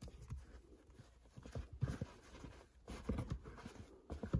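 Snapback caps being handled and shifted on a shelf: faint, irregular soft knocks and fabric rustles as the caps and their stiff brims are moved.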